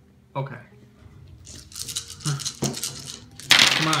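A handful of game dice shaken in cupped hands, rattling, then thrown onto a wooden table where they clatter and scatter in a loud burst near the end.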